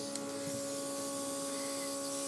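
Airbrush makeup compressor running with a steady hum, while the airbrush hisses softly, spraying eyeshadow onto the eyelid.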